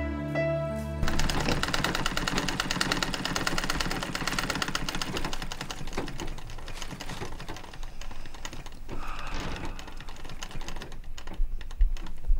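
A sewing machine running steadily, a fast even clatter of stitches, with a music cue ending about a second in and the clatter thinning out near the end.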